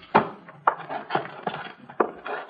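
Radio-drama sound effect of a wooden door being unlocked and opened: a sharp knock at the start, then a string of lighter clicks and rattles.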